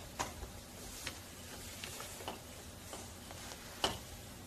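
A pause between speakers: faint room hiss with a few scattered soft clicks and ticks, the sharpest one just before the end.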